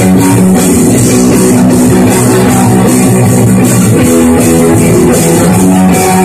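Live rock band playing an instrumental passage: electric guitars and bass over a Sonor drum kit with a steady wash of cymbals, loud and dense throughout.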